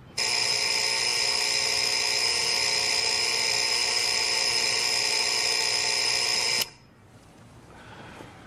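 Alarm clock ringing steadily, cutting off suddenly about six and a half seconds in.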